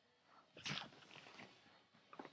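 A cat hissing: one short, sharp hiss about half a second in, followed by a few softer noises.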